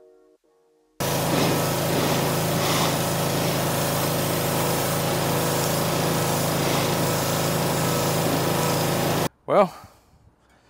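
Pressure washer running steadily, its spray blasting red paint off a plastic golf cart body; it starts abruptly about a second in and cuts off sharply near the end.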